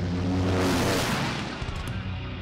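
A vehicle pass-by sound effect: a rush of engine-like noise that swells to its loudest within the first second and fades away by about a second and a half in, over the closing guitar music.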